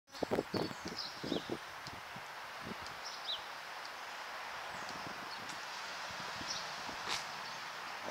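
Steady outdoor background noise with a few short, falling bird chirps, and several knocks in the first second and a half.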